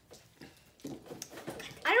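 Mostly quiet room with faint, low speech, then near the end a child starts speaking with a drawn-out 'I' that rises in pitch.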